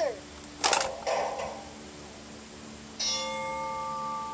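A plastic ball drops into the LeapFrog Color Mixer toy truck with a clunk less than a second in, followed by a short rattle; about three seconds in the toy plays an electronic chime that fades out over a second or so.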